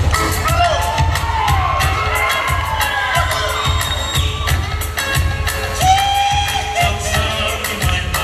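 Fast, steady drum-beat music for a Samoan dance, with high whooping shouts and crowd cheering over it.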